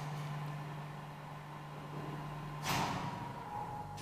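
Old Kone traction elevator running in its shaft with a steady low hum that stops about two-thirds of the way in with a loud clunk as the car halts at the landing.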